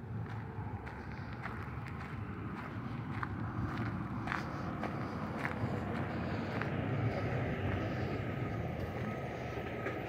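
Road traffic on a city street: engine and tyre noise from passing vehicles, a steady low rumble that slowly builds to a peak about seven seconds in and eases slightly toward the end, with a few faint clicks.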